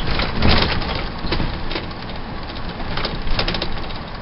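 Cabin noise of a small shuttle bus on the move: a steady road and engine rumble with frequent clicks and knocks from the body and fittings, loudest about half a second in.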